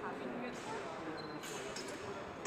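Background chatter of onlookers in a large echoing hall, with a quick cluster of sharp clicks and knocks near the end from the fencing bout.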